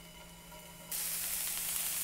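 Strips of pork neck sizzling in a hot nonstick frying pan. The sizzle starts suddenly about a second in, after a faint, quiet stretch, and then holds steady.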